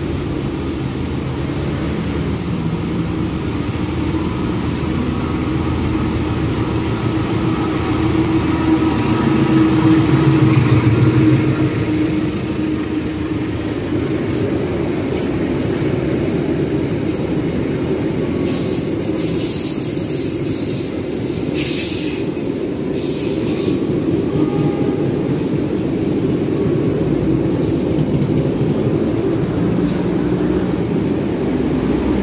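A diesel locomotive and its passenger coaches running past along a station platform. The engine's low drone swells as the locomotive goes by about ten seconds in. After that comes a steady rumble of coach wheels, with bursts of high wheel squeal around twenty seconds in.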